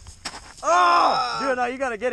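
A person's loud, drawn-out yell with no words, starting about half a second in, its pitch wavering and shaking from about halfway. A short sharp click comes just before it.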